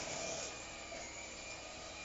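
Electric hand mixer running steadily with a faint whine, beating mashed potatoes in a pot.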